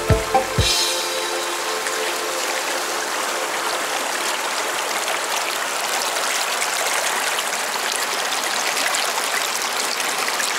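Background music cuts off about a second in, leaving the steady rush of a shallow mountain stream running over rocks and small cascades close to the microphone.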